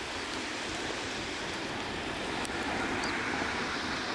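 Street traffic on a slushy, snow-covered road: cars and a bus passing, with a steady hiss of tyres through wet slush.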